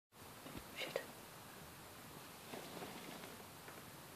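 Faint whispering, clearest about a second in and again more weakly past the middle, over quiet room tone.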